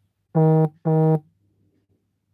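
Two identical short, low-pitched electronic beeps in quick succession, about half a second apart, each with a steady pitch and an abrupt start and stop, like an alert tone.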